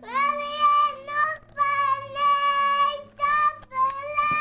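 A young girl's voice singing a string of long, high notes, all held at nearly the same pitch and broken by short gaps; the first note slides up into place.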